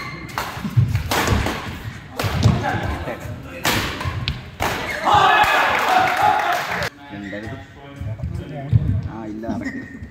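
Badminton doubles rally on an indoor court: players' feet thudding on the court and sharp hits of the shuttlecock, over loud shouting voices that cut off suddenly about seven seconds in.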